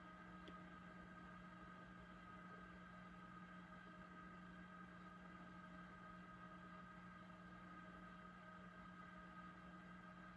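Near silence: the faint, steady hum of a running egg incubator, holding several unchanging tones.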